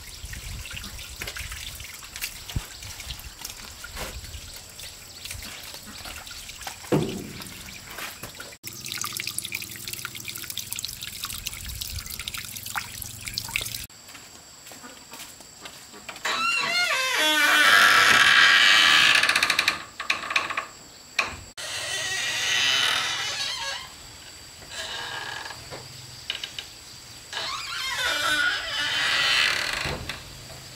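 Water running from an outdoor tap into a plastic basin, with small knocks and splashes of a cloth being washed. Later come several loud, harsh stretches of noise lasting a few seconds each, the loudest sounds here.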